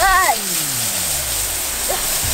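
Garden hose spray hissing steadily onto wet concrete. Right at the start a pitched, voice-like sound rises briefly, then slides slowly down in pitch for over a second.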